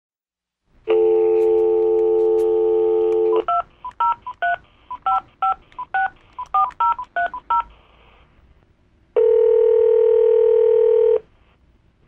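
Telephone dial tone held for about two and a half seconds, then a quick run of touch-tone keypad beeps as a number is dialled, then one long ring of the ringback tone as the call goes through.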